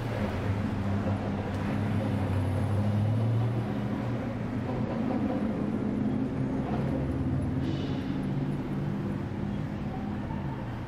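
Street traffic, with a vehicle engine running nearby as a steady low hum that eases off about halfway through.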